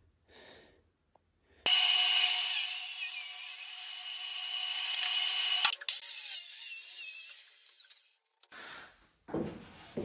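Handheld circular saw cutting a board: it starts abruptly about two seconds in with a loud, steady whine. About six seconds in the whine stops and the sound fades out over about two seconds. A short, weaker sound comes near the end.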